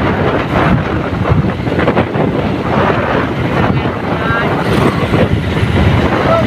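Wind rushing and buffeting over the microphone of a phone held on a moving motorbike, with road and engine noise beneath it and a few brief, indistinct voices.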